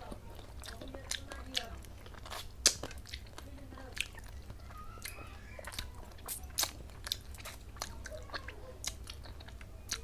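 Close-up chewing of a mouthful of fish curry and rice eaten by hand: wet mouth clicks and crunches at irregular intervals, the loudest about two and a half and six and a half seconds in.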